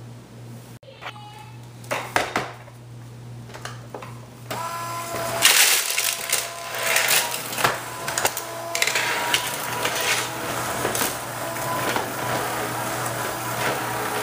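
Bissell Perfect Sweep Turbo cordless sweeper running over a tile floor: its small motor and spinning brush roll give a steady whine, with scattered clicks and rattles as it picks up debris. A few knocks come first, and the motor sound starts about four and a half seconds in.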